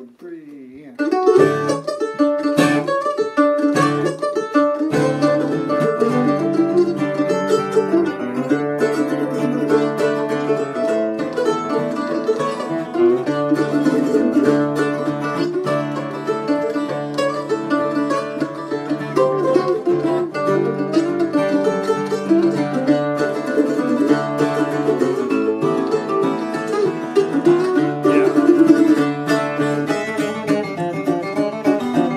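Mandolin and acoustic guitar playing a bluegrass instrumental together, starting about a second in, with the mandolin carrying the tune. The guitar's steady low bass notes come in at about five seconds.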